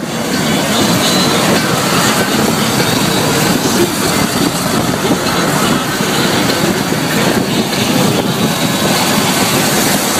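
Steady, loud rush of wind and tyre noise from a car moving along a wet road, heard from inside the car by the side window.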